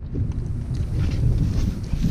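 Wind buffeting the microphone: a steady low rumble with no clear tone.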